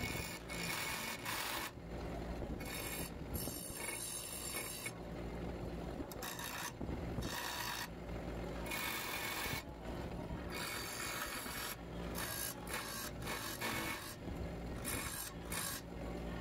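An 8-inch bench grinder running, with a steel bar pressed against the grinding wheel in repeated short passes, so the rough grinding noise comes and goes about once a second over the motor's steady hum.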